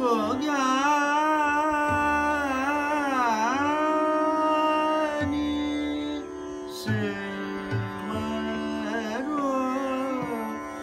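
Male Hindustani classical voice singing a slow vilambit khayal in raga Bairagi: long held notes with slow ornamental glides, a dip in pitch about three seconds in and a short break around six seconds. Underneath is the steady drone of a tanpura that the singer plucks.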